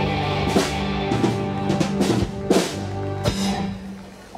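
Live rock band holding a sustained chord while the drummer plays a run of about six loud snare and bass drum hits, the sound dying away near the end as the song closes.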